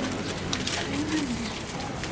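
A pigeon cooing softly once, a low rising-and-falling coo about a second in, over faint street background.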